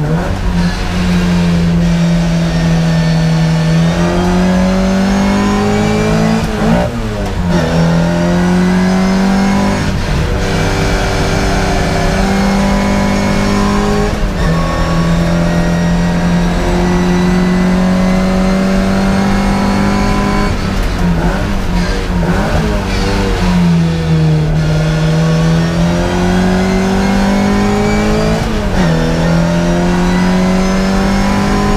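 Classic Mini race car's A-series four-cylinder engine under hard racing use, heard from inside the cockpit: its loud note climbs steadily, then drops sharply at each gear change or lift, several times over the stretch.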